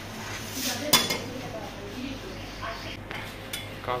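Metal spatulas clinking and scraping on the steel cold plate of a rolled ice cream counter, with one sharp ringing clink about a second in and lighter clicks near the end.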